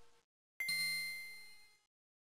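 A single bright, bell-like ding from a logo intro sound effect, struck about half a second in and ringing down to nothing over about a second, just after the tail of an earlier chime fades.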